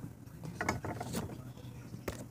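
A few soft clicks and rubbing from something handled close to the microphone, over a faint low steady hum.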